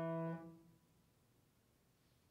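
The last held note of a left-hand passage on a Shigeru Kawai grand piano, cut off by the damper about half a second in.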